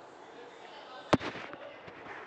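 A single sharp, loud click about a second in, close to the microphone, followed by a brief trail of fainter crackles.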